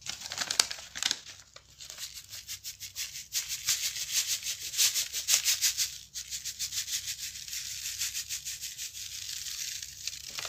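Iron filings sprinkled from a folded paper onto the clear top of a box: a dense, rapid rattle of falling grains that is loudest in the middle.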